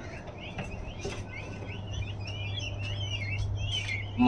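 Newly hatched peafowl chicks peeping in an opened incubator: many short, high chirps overlapping continuously, over a steady low hum.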